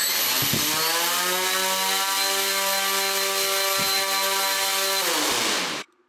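Hexacopter's six brushless motors spinning up under load, their propellers flipped upside down, during a compassmot interference test. The whine rises quickly, holds steady for about five seconds, then winds down and stops near the end.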